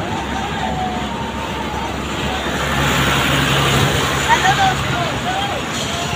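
Fairground ride machinery running with a steady low hum. A rushing noise swells about halfway through as the ride moves, with scattered voices in the background.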